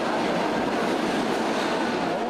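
Steady, loud running noise of a train in a busy rail station.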